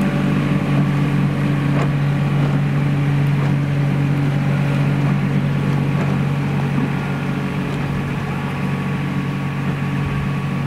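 An engine running at a steady speed, giving a constant low hum with a few faint clicks. The hum eases slightly about seven seconds in.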